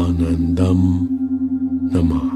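Meditation music: a steady sustained tone with a gently pulsing level, over which a low voice chants in two short phrases in the first second, and another chanted phrase begins near the end.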